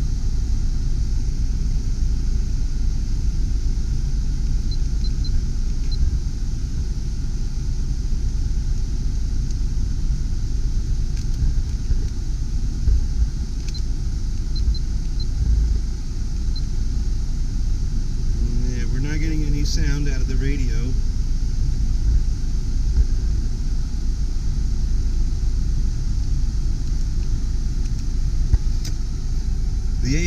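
A 1997 Honda Del Sol's engine idling steadily, heard from inside the cabin with the air-conditioning blower running: a continuous low rumble under a steady rush of air.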